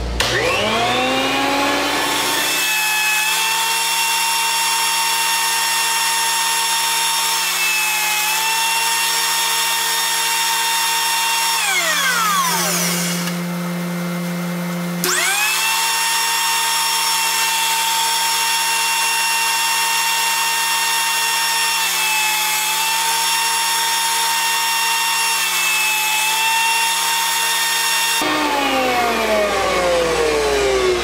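Benchtop thickness planer's motor spinning up with a rising whine and running steadily, its pitch sagging briefly twice as wood feeds through the cutterhead. About twelve seconds in it winds down, starts again about three seconds later, and winds down once more near the end.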